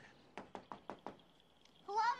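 A quick run of about five sharp knocks in the first second. Near the end a high, wavering, pitched cry begins.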